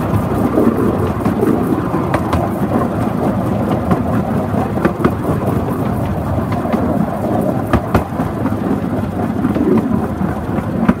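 Miniature-railway bogie wagon running along the track, heard close to its wheels: a loud, steady rumble of steel wheels on rail with irregular sharp clicks.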